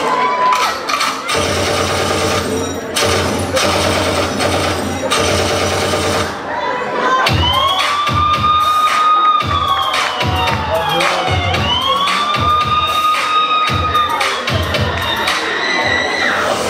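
A school audience cheering and shouting over dance music. About seven seconds in, two long wailing tones follow one another, each rising, holding and falling.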